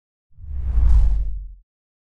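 A single logo-reveal whoosh sound effect with a deep low rumble, swelling in about a third of a second in, peaking near the middle and fading out after about a second and a half.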